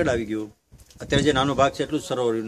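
A man speaking, with a brief silent gap about half a second in before his voice picks up again.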